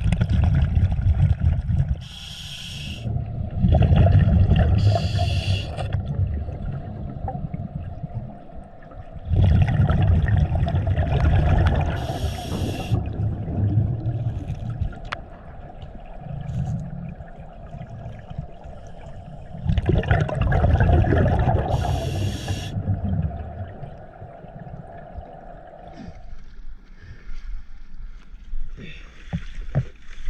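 Scuba diver breathing through a regulator underwater: four long bursts of exhaled bubbles rumbling, with a short hiss of the regulator between them on each inhale.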